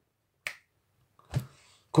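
Two finger snaps, about a second apart.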